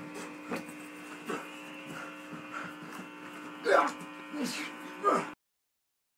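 Steady electrical buzz on the recording with a few short shouts or grunts from a person in a scuffle, loudest about four seconds in. The sound cuts off suddenly a little after five seconds in.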